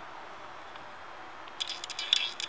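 Room tone: a steady hiss, with a few short rustling clicks near the end.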